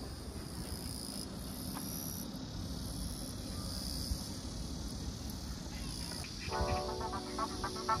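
Insects chirping steadily in high-pitched bands over a low outdoor hum by a lakeside park. Music with a clear melody comes in about six and a half seconds in.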